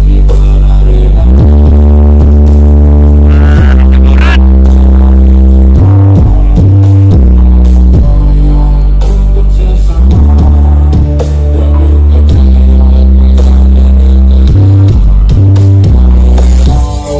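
Very loud, bass-heavy electronic dance music played through the Aeromax carreta, a large mobile sound system, with long deep bass notes that change every second or two and drop out briefly a few times. A rising high synth glide comes in a few seconds in.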